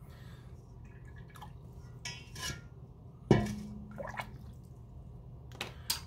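Faint scratching and small clicks of a hand digging tool working a water-softened fossil dig brick, with one sharp tap about halfway through.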